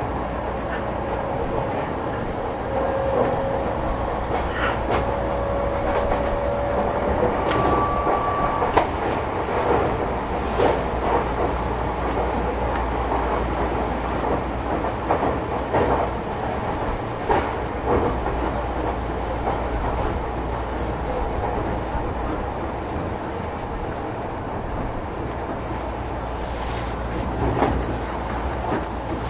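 Tokyo Metro 10000-series electric train running on the line: a steady rumble with a motor whine that rises slightly in pitch over the first several seconds and a short higher tone about eight seconds in. Then sharp wheel clicks over rail joints come at irregular intervals.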